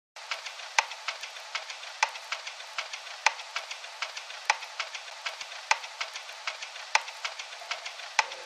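Vinyl-style crackle and pops used as a lo-fi intro effect in an R&B track: a thin, trebly hiss of small clicks with no bass, with a louder pop about every second and a quarter.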